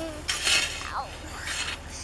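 A long-handled digging tool scraping and crunching into packed snow: one short harsh burst about half a second in, and a fainter scrape near the end.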